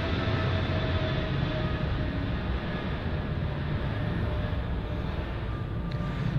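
Plane flying over: a steady rushing noise with a faint high whine, easing a little toward the end.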